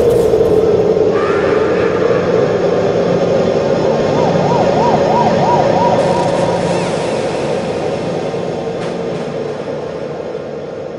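Closing passage of an electronic house mix: a dense, hissing wash of sound over a steady drone, with a tone that wavers up and down like a siren a few times midway, the whole slowly fading out.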